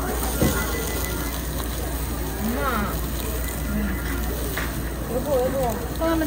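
Indistinct voices chattering over a steady low hum, with one sharp click of metal tongs against the wire grill grate about half a second in.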